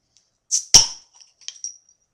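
A beer bottle's crown cap prised off with a lighter: a short hiss and a sharp pop as the cap comes away, followed by a few light clinks.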